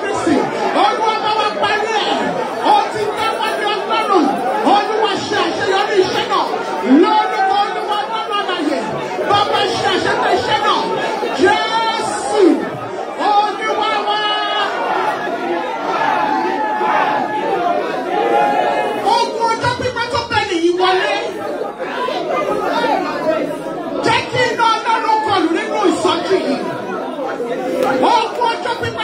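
Many voices praying aloud at once, overlapping into a continuous chatter that echoes in a large hall: a congregation praying in pairs.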